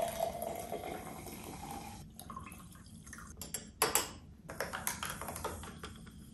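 A fizzy drink is poured from a glass bottle into a tall glass, a liquid pour whose pitch rises slightly as the glass fills over about two seconds. It is followed by several sharp clinks and taps of glass as a glass straw and the glass are handled.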